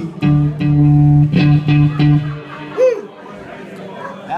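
Electric guitar and bass guitar playing a few strummed, held low notes that die away a little past halfway, followed by a short sliding note near three seconds in.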